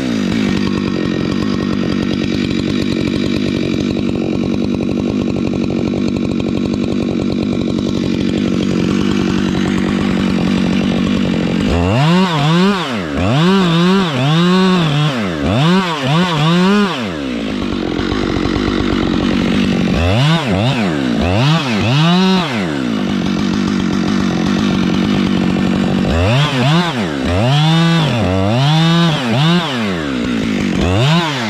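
Gas chainsaw cutting into the base of a large redwood trunk. It runs at a steady pitch under load for about the first ten seconds, then its revs rise and fall again and again, about once a second, through the rest of the cut.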